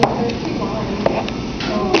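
Snap-on lid of a plastic bucket being pried open: a sharp click at the start and another as the lid pops free near the end.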